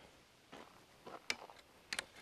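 A few faint, sharp metallic clicks as a roll-up sign is fitted onto an aluminium sign stand's metal roll-up bracket, the clearest a little past halfway and another couple near the end.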